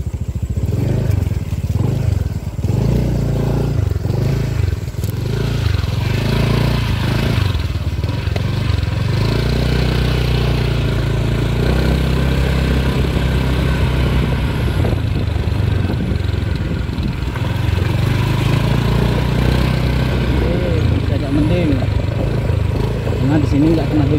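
Small motorcycle engine running while riding, its note rising and falling, with a steady hiss over it through most of the middle stretch.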